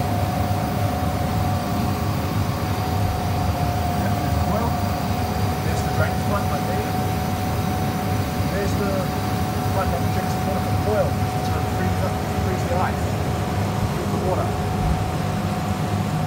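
Walk-in cool room evaporator fans running: a steady low whoosh and hum with a thin steady whine above it.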